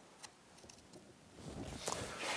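A few faint, sparse clicks as a new water pump impeller is slid down the driveshaft and seated over its key onto the wear plate of an outboard lower unit.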